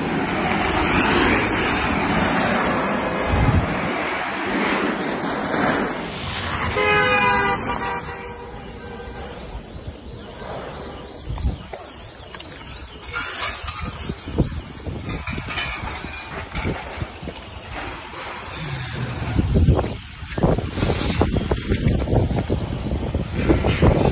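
Outdoor street noise with vehicle sound, and a car horn sounding once for about a second and a half, roughly seven seconds in. A few low thumps come and go.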